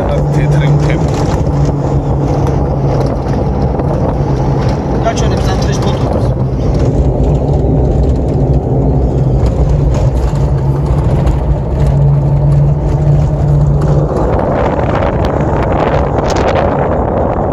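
A car driving along a road, with a steady low engine drone over road rumble. Near the end the drone fades and a rush of wind noise takes over.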